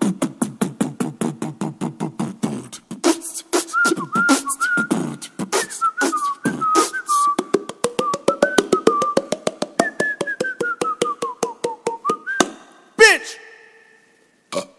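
A person beatboxing: rapid mouth clicks and pops at about five a second, with a low hum under them at first. From a few seconds in, a wavering whistled tune runs over the beat and slides down in pitch near the end, before one loud sharp vocal burst and an abrupt stop.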